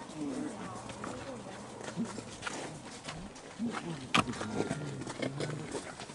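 Low, quiet voices of people talking nearby, with scattered clicks and one sharp click about four seconds in.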